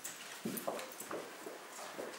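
Slow, uneven footsteps of shod feet on bare wooden floorboards, three or four separate steps.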